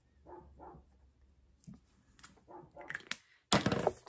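A dog barking outdoors, faint and muffled, two short barks early on, at a rabbit crossing the yard. A few light clicks follow, then a loud rustle of packaging being handled near the end.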